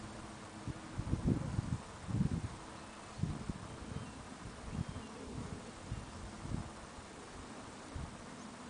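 Wind buffeting the microphone in uneven low gusts, the strongest about one to two and a half seconds in, then lighter ones.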